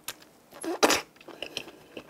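A raw oyster slurped off its half shell and chewed: a few short wet mouth sounds, the loudest just under a second in.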